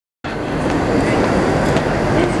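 Railway station ambience in a large hall: a steady echoing din of trains and people, with scattered clicks. It starts abruptly just after the recording begins.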